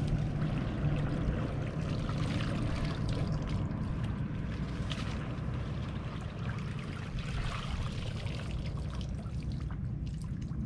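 Shallow water sloshing and splashing around a wading person's legs and a woven bamboo basket being scooped through it, with many small irregular splashes.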